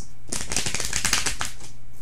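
Tarot cards being shuffled: a quick run of rapid card clicks lasting about a second and a half.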